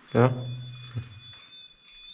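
Speech: a man says a short 'Ja' and holds a low hum for about a second. Under it run several steady high-pitched electronic tones that do not change.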